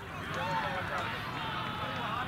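Indistinct voices of players and onlookers calling and chatting across an open grass field, with one louder call about half a second in.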